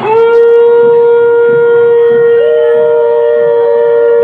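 Conch shell (shankha) blown in one long, steady, loud note, with a second, higher note joining about two and a half seconds in, as for a Hindu ritual blessing.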